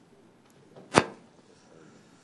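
A single sharp knock on the desk, close to the microphone, about a second in, with a softer tap just before it, over a quiet room.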